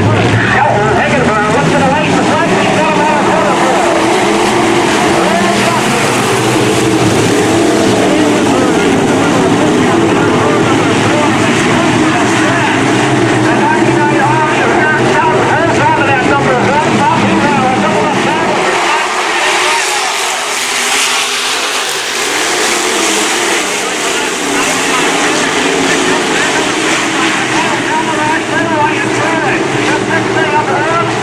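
A pack of dirt-track sport modified race cars running at full throttle, their engines rising and falling in pitch as the cars accelerate down the straights and lift for the turns. About two-thirds of the way through the low rumble thins as the pack moves away, then builds back as it comes around again.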